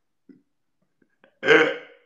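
A man's single short, loud vocal burst about one and a half seconds in, after a stretch of near silence.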